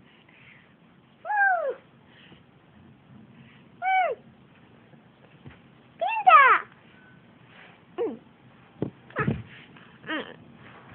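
A young girl's short, high-pitched squeals, about five of them, each rising and then falling in pitch, as she flips a panda plushie in the air, with a couple of soft handling bumps near the end.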